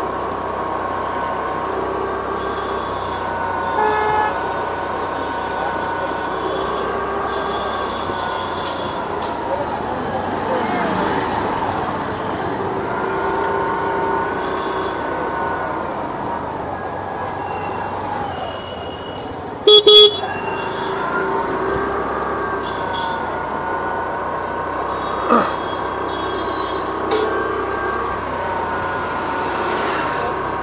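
Busy city street traffic heard from a moving scooter, with vehicle horns honking now and then. The loudest is a sharp double honk about two-thirds of the way through.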